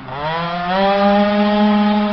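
Tuned two-stroke scooter engine running hard at high revs as the scooter rides away. The pitch dips at the start, climbs over the first second, then holds steady and high.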